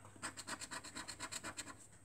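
A small metal bar scraping the coating off a scratchcard in quick, even back-and-forth strokes, several a second.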